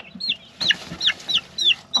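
Young chickens peeping: a quick run of high, downward-sliding peeps, about three a second, the calls of scared teenage chicks.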